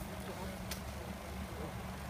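Steady low background rumble, with one short hiss about two-thirds of a second in from a hand-held trigger spray bottle spritzing onto the face.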